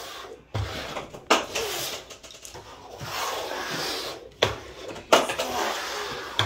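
Upturned bowls being slid and shuffled across a wooden tabletop: a steady scraping rub with four sharp knocks as bowls are set down or bump the table.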